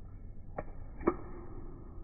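Two short, sharp knocks about half a second apart, the second louder with a brief ringing after it, over a low steady background rumble.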